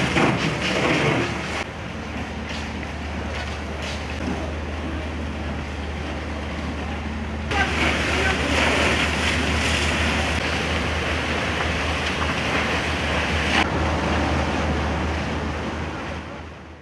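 Fire hoses spraying water onto a burning building: a steady rushing hiss over a low rumble, growing hissier for several seconds in the middle.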